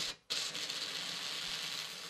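Pressure sprayer wand spraying liquid: a short spurt, then a steady hiss of spray lasting nearly two seconds.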